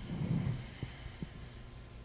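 Handling noise from a handheld microphone: faint low thumps and rustle over a steady low hum, with a couple of small ticks about a second in.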